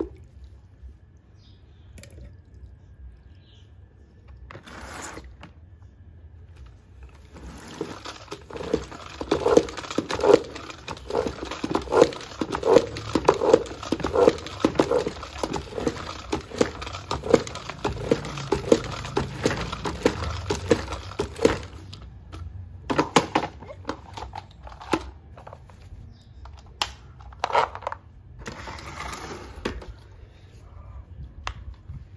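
Spin mop head whirling in the bucket's spin-dry basket, pumped by pressing the handle down in strokes about twice a second, with a swishing rush of water thrown off the mop, lasting about fourteen seconds. A few separate knocks and clicks follow near the end as the mop is handled.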